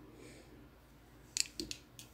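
Hands rolling a strand of hair onto a soft foam pillow roller: a faint rustle, then a quick run of three or four small sharp clicks about a second and a half in.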